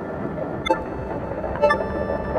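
Experimental electronic music: Elektron Analog Four synthesizer sounds looped through an Empress Zoia. There is a dense, noisy textured bed, with two short pitched blips, about a second apart.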